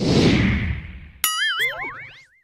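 Logo sting sound effect: a swoosh that fades out, then a bit over a second in a sharp hit followed by a wobbling, springy tone and a rising zip.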